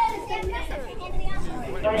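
Children's voices, talking and calling out in quick high-pitched phrases.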